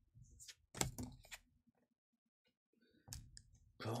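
Pokémon trading cards being handled and laid down on a table: a few sharp clicks as cards are flicked through and set down, the loudest about a second in.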